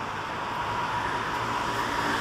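Steady road-traffic noise, slowly growing louder, with a faint steady whine coming in about a second in.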